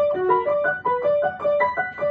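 Upright piano played in quick runs of single notes that climb and fall in pitch, a technical exercise of scales or arpeggios.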